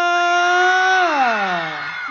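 A performer's voice over the concert sound system holding one long call on a steady pitch, then gliding down in pitch and trailing off near the end.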